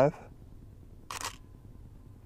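A camera shutter fires once about a second in, a single short click, taking a 1/25-second exposure set by the camera's automatic metering.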